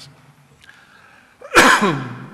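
A man sneezes once, a sudden loud burst about one and a half seconds in.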